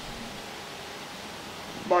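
Steady, even hiss of background room noise during a pause in speech, with a man's voice starting right at the end.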